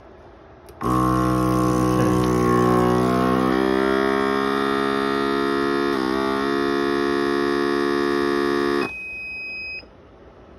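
Avid Armor A100 vacuum sealer running a cycle. Its vacuum pump hums steadily for about eight seconds, dipping briefly in pitch about six seconds in. It then drops to a quieter, steady high-pitched tone for about a second before cutting off.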